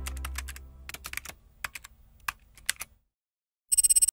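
Keyboard typing sound effect: a run of irregular key clicks over the fading tail of a low tone, stopping about three seconds in. A short, loud burst follows near the end.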